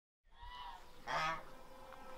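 A domestic fowl calling: a faint call just after the start, then a louder call about a second in.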